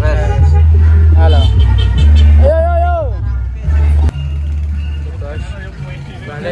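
Men's voices talking and calling out close by, one long drawn-out shout about two and a half seconds in, over a loud deep rumble that jumps in level several times.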